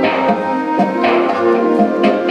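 School concert band playing: woodwinds and brass hold sustained chords that move to new notes about a second in.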